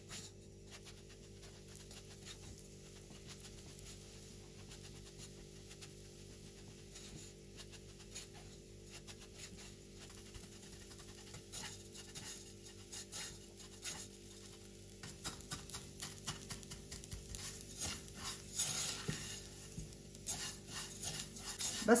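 Silicone spatula stirring and scraping shredded kunafa dough as it toasts in ghee and oil in a nonstick pot. The quick rustling scrapes are faint at first and grow louder and busier in the second half, over a steady low hum.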